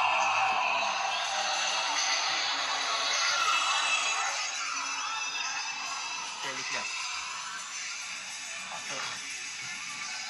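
Ring announcer's voice over an arena PA, mixed with music. The sound is loudest at first and grows quieter over the second half.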